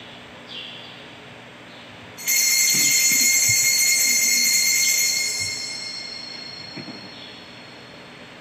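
A small metal altar bell rung about two seconds in, with a sudden bright high ringing that holds for about three seconds and then slowly fades away.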